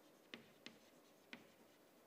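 Chalk writing on a chalkboard: three faint, short taps of the chalk against the board, with quiet room tone between them.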